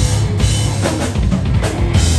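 Live rock band playing loudly, the drum kit to the fore with kick drum and cymbal strikes over guitar and bass.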